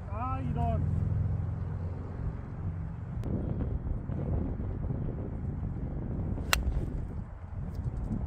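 Golf iron (a 5-iron) striking the ball: one sharp crack about six and a half seconds in. Low rumble of wind on the microphone throughout.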